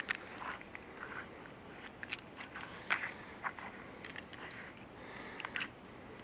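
Faint, scattered clicks and scrapes of a metal microscope lamp housing being handled and worked apart as its lamp holder is pulled out.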